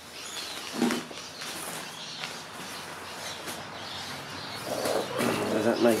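Hands working damp sand and polystyrene beads in a glass bowl, a soft gritty rustle, under faint outdoor ambience with small bird chirps; a man's voice comes in near the end.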